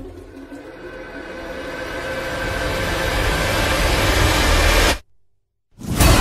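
Trailer sound-design riser: a swelling drone of noise and steady tones that grows louder for about five seconds, then cuts off suddenly into a brief silence before loud sound comes back at the very end.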